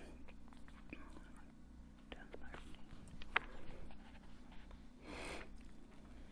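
Faint rustling and handling of a book's paper pages, with one light sharp click partway through and a short soft rush of noise near the end.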